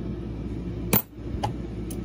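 A brass Presidential dollar coin dropping into a compartment of a clear plastic sorting box: one sharp thunk about a second in, then two lighter clicks as it settles.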